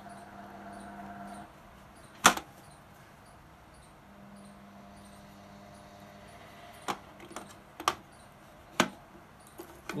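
Handling sounds of a grid dip meter and its plug-in coils: a few sharp clicks and knocks, the loudest about two seconds in and three more in the last few seconds. A faint steady hum sits under them at times.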